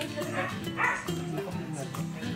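A dog barks twice in the first second, the second bark the louder, over background music.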